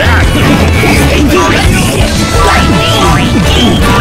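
A dense, steady jumble of many animated-cartoon soundtracks playing at once, with music and cartoon sound effects piled on top of each other.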